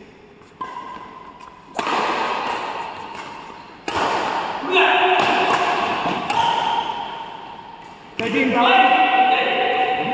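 Badminton rally in a large echoing hall: a few sharp racket-on-shuttlecock hits, each ringing on in the hall's reverberation, with players' voices calling out.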